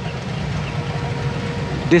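Steady low rumble of outdoor background noise, with a faint thin hum coming in about a second in.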